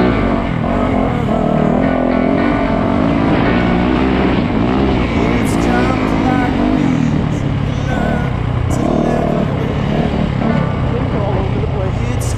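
Dirt bike engines revving up and down with the throttle, their pitch rising and falling.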